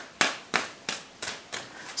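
Five sharp taps at an even pace, about three a second, of a hand tapping on the tarot cards laid out on a wooden tabletop.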